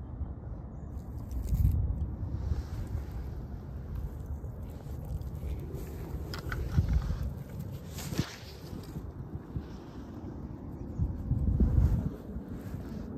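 Wind buffeting the microphone in low rumbling gusts, strongest about a second and a half in and again near the end, with a couple of brief faint scrapes in the middle.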